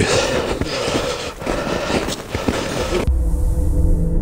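Footsteps crunching through snow, mixed with outdoor noise on the microphone. About three seconds in this cuts off abruptly and low, droning intro music begins.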